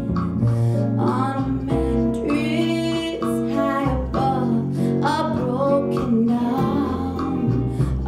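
A woman singing a soulful song live, holding notes with vibrato, backed by a jazz combo of guitar, piano, bass and percussion.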